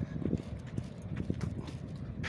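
Bicycle jolting along a rough sandy dirt trail: irregular low thumps and knocks, several a second.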